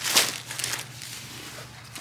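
Plastic grocery bags rustling as they are handled, with a short burst of crinkling just after the start and fainter handling noise after it.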